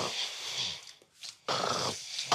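A man snoring in his sleep: one long snore, then another beginning about a second and a half in.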